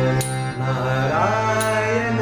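Man singing a Kannada devotional bhajan over harmonium, its reed chords held steady beneath a wavering vocal line. A crisp percussion stroke falls twice, about a second and a half apart.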